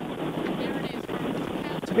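Steady rushing noise with faint, indistinct voices under it.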